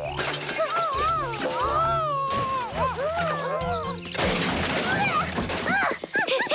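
Cartoon soundtrack: background music with a steady low bass line under characters' wordless, gliding vocal sounds such as groans and whimpers, then a sudden noisy rush about four seconds in.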